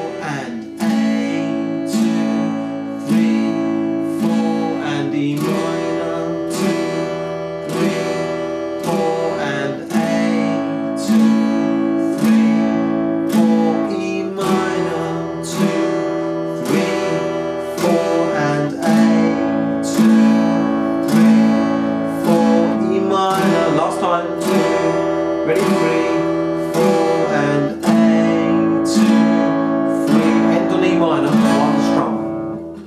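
Yamaha acoustic guitar strummed with a pick in even down strums, switching back and forth between an E minor and an A chord.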